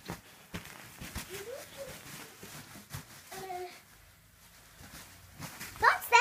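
Light knocks and rustling of a small child rolling on a mattress, with a young child's faint short vocal sounds twice, and a louder child's voice near the end.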